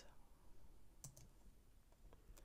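Near silence: faint room tone, with a couple of faint clicks about a second in from computer mouse and keyboard input.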